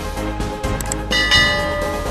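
Background music with sound effects: two short clicks a little under a second in, then a bright bell chime about a second in that rings on and slowly fades, the notification-bell ding of a subscribe animation.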